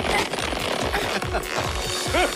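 Cartoon sound effect of the magic hat stretching as it is pulled: a fast run of repeated ratchet-like strokes, over background music.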